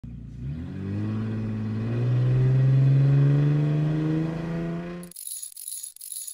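Car engine revving up, its pitch rising steadily for about four seconds before cutting off suddenly. A brief high-pitched shimmer follows near the end.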